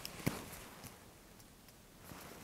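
A marker pen being handled gives one sharp click about a third of a second in, with a smaller tick just before and another a little later. After that there are only faint, quiet handling sounds of a hand on bare skin.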